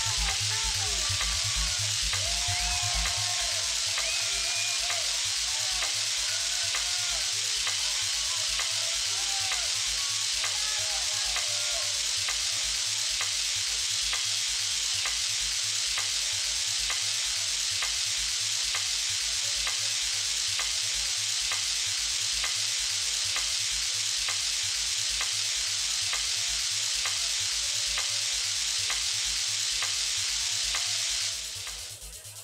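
Live techno over a festival PA, picked up from the crowd: a steady kick drum about twice a second buried under a heavy hiss. Short wavering squeals come through in the first few seconds.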